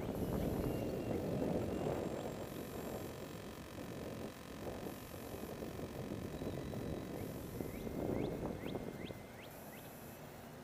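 Wind buffeting the microphone in uneven gusts, strongest in the first two seconds and again near the end, with a few faint bird chirps near the end.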